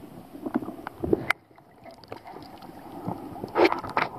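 Water around a submerged camera: muffled sloshing with scattered clicks and knocks. About three and a half seconds in comes a louder splash and gurgle as the camera breaks the surface.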